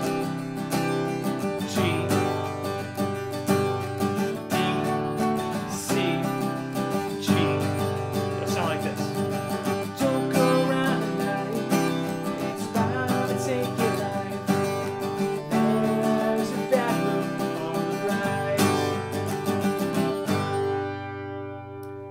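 Steel-string acoustic guitar strummed through the chord progression C–G–D–C–G over and over, with a man's voice singing along. Near the end the strumming stops and the last chord rings out.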